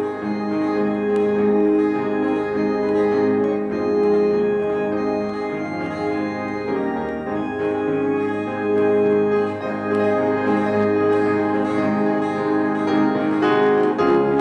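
Instrumental worship music: sustained keyboard chords with a strummed acoustic guitar, played at a steady, gentle pace.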